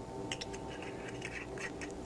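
Quiet pause with a steady low electrical hum and a few faint ticks and scrapes.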